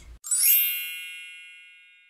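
A bright chime sound effect: a single ding with a sparkly shimmer at the onset, ringing with several clear tones and fading slowly over about two seconds.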